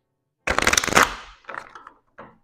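Tarot deck being riffle-shuffled: a dense run of rapid card flicks about half a second in, lasting about a second, then a couple of shorter riffles.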